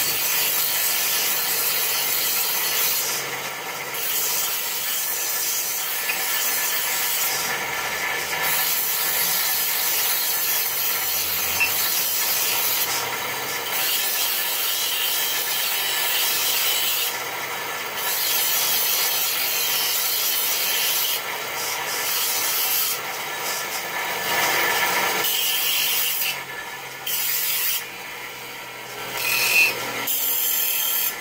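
Electric bench grinder running with a steady motor whine while a large steel butcher's knife is sharpened on its stone wheel: a harsh grinding hiss that comes in passes several seconds long, breaking off briefly each time the blade is lifted from the wheel.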